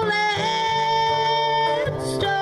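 A woman singing a long held note in a live country-style song, with guitar accompaniment.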